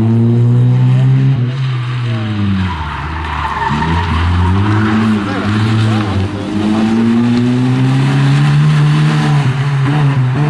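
Opel Corsa rally car's engine revving hard, its pitch climbing and dropping back several times through gear changes and lifts. Tyres squeal briefly about four seconds in.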